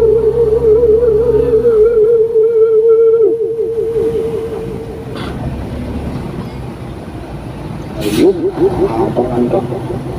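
A voice singing a long wavering note over music for the first three seconds or so, then fading. Steady traffic noise fills the middle. Near the end a sharp click is followed by the wavering singing voice again.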